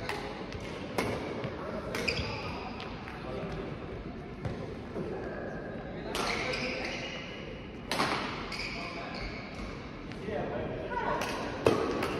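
Badminton rackets striking a shuttlecock: sharp cracks at irregular intervals, echoing around a large sports hall, with brief high squeaks from court shoes. The hits bunch up near the start and again near the end, with a lull in between.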